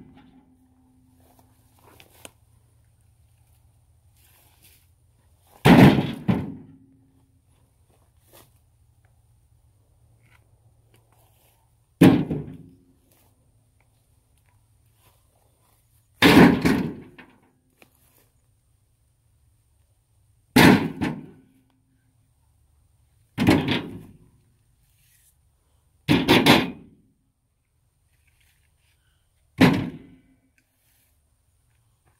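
Cut firewood logs tossed one at a time into a small steel dump trailer: seven heavy thuds a few seconds apart, each with a short low ring from the metal bed.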